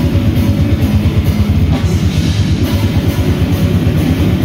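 A live metal band playing: distorted electric guitar over a drum kit, with rapid kick-drum strokes and repeated cymbal crashes.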